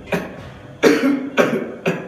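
A man coughing four times in quick succession, the loudest cough about a second in.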